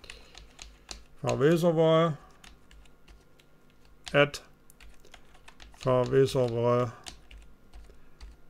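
Typing on a computer keyboard: a run of irregular keystroke clicks as an email address is retyped. A man's voice speaks a few words about a second and a half, four and six seconds in, and is the loudest thing heard.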